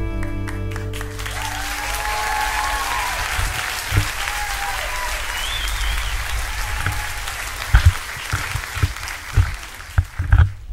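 The last chord of a song dies away over about the first second, then a crowd applauds and cheers, with a few whoops rising and falling.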